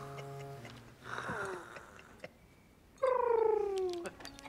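A man's voice doing a soft mock roar as a mewing, cat-like cry: a held low hum, then two falling wails, the last one the loudest. A few hand claps come near the end.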